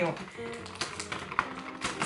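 Quiet background music with a few sharp taps and clicks of fingers working a small bath bomb out of a cardboard advent calendar compartment.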